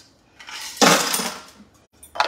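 A metal cocktail shaker is emptied out into the sink: a clattering, splashing rush with a metallic ring that peaks about a second in and dies away within a second.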